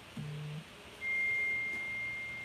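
A steady, high-pitched electronic beep, one pure unchanging tone, starts suddenly about a second in and holds. Just before it comes a short, low hum.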